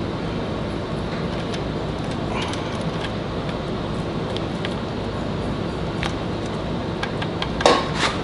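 Light metallic clicks and jingling of a steel timing chain and sprockets as the crankshaft sprocket is worked onto the crank snout, over a steady background hiss. A louder clatter of clinks comes near the end.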